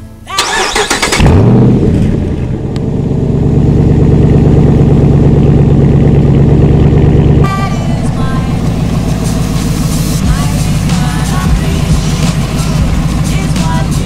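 Lifted Ram Power Wagon's Hemi V8 cranking briefly and firing up, surging as it catches, then settling into a loud, steady idle. The idle drops a little about seven seconds in.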